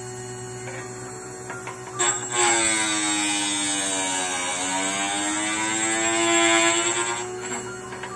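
End mill grinding machine humming steadily. About two seconds in, its grinding wheel bites into the cutting edge of a three-flute end mill turned in the knife-edge grinding block: a loud pitched grinding whine that sinks in pitch, rises again and fades after about five seconds.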